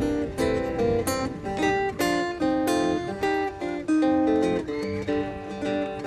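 Two acoustic guitars playing an instrumental blues break, a quick run of plucked single notes over chords.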